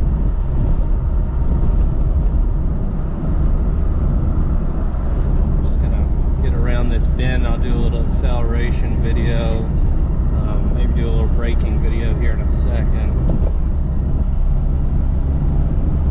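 Classic Mini Balmoral Edition on the move, heard from inside the cabin: its engine and road noise make a steady low drone with no change in pace.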